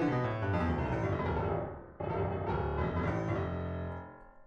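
Low bass notes from a software keyboard instrument, played by clicking the piano-roll keys in FL Studio. One note is ringing and fading, and a second is struck about halfway through and fades away near the end.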